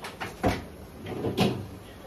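A few quick knocks, the heaviest about half a second in, then a longer clatter around a second and a half in: kitchen things being handled and set down, like a cupboard door or a container.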